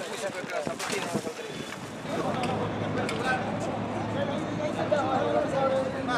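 Men's voices talking indistinctly over one another, with a few sharp knocks in the first two seconds and a steady low hum from about two seconds in.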